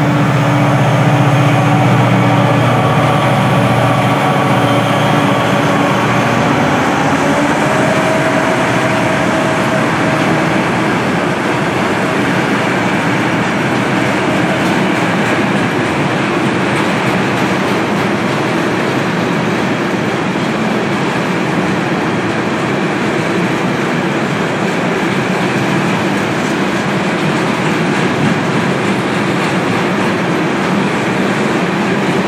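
A freight train passing close by. The locomotive gives a steady low hum in the first few seconds, which fades as it goes by. Then a long train of freight wagons rolls past, with a loud, even rumble and rattle of wheels on the rails.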